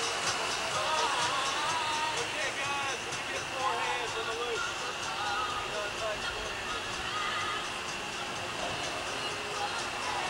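Distant voices calling out in wavering pitch over background music, with a steady high-pitched hum underneath.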